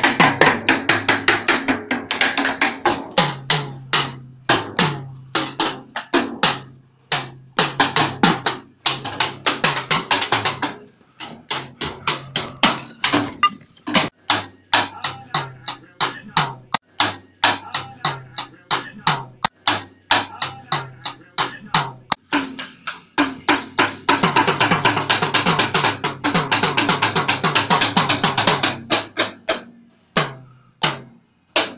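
A small child beating a kid-sized drum kit with light-up drumsticks: rapid, uneven strikes that go on with only brief breaks, a child's free-form drumming rather than a steady beat.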